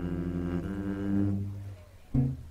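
Double bass played with the bow: one long, low held note that shifts slightly in pitch about half a second in and fades away near the end.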